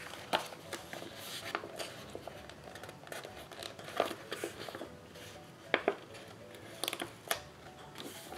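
Paper sticker sheets rustling as they are picked up, shifted and laid back down, with a scatter of sharp clicks and taps, a few louder ones about four seconds in and near the end.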